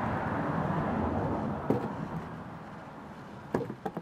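Rustling as potatoes are handled on loose compost, then a few sharp knocks near the end as potatoes drop into a plastic plant pot.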